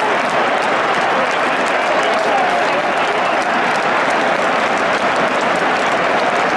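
Football stadium crowd cheering and applauding a goal: a loud, steady wash of many voices and clapping.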